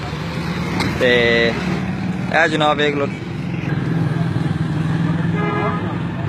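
Street traffic: small engines running steadily under a brief horn toot about a second in, with passers-by talking.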